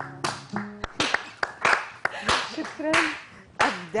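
A small group of people clapping unevenly with voices calling out, as applause after an acoustic song.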